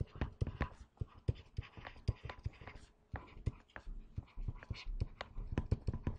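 A pen stylus tapping and scratching on a tablet writing surface as figures are written, heard as a string of irregular small clicks and taps, several a second.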